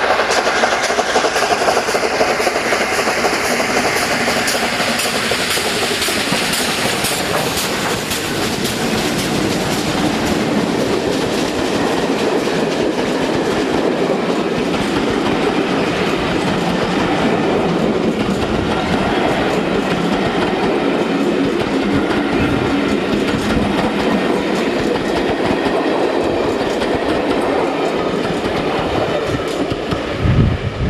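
Steam locomotive 71000 Duke of Gloucester, a BR Standard Class 8 three-cylinder Pacific, working its train past with rapid exhaust beats over the first ten seconds or so. Its carriages then roll by with a steady clickety-clack of wheels over the rails.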